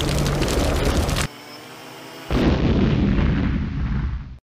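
Explosions from drone strikes: heavy rumbling blast noise with crackle, broken about a second in by a short quieter lull with a faint steady hum, then another loud rumbling blast.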